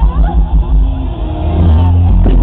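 Live concert sound from the stage speakers, recorded loud: heavy bass pulsing with the beat for about the first second, then a held low rumble. A sung note slides upward right at the start.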